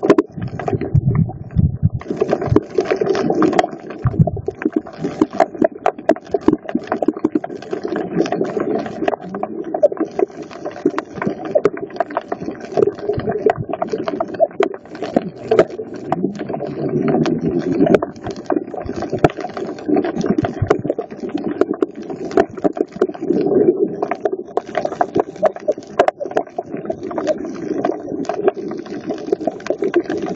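Underwater ambience over a coral reef, recorded underwater: a dense, irregular crackle of sharp clicks over a steady low hum.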